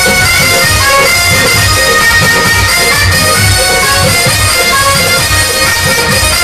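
Devotional music: a harmonium holding sustained reedy notes over a drum beating about twice a second.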